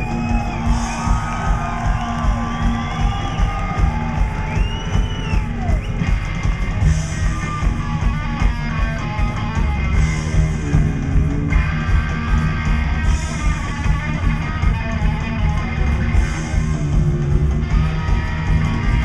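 Live psychobilly band playing an instrumental passage: an electric guitar lead with bent notes over upright bass and drums, keeping a steady beat.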